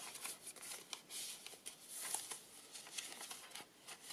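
Soft, irregular rustling and brushing of paper as the pages and tucked-in tags of a handmade journal are turned and handled.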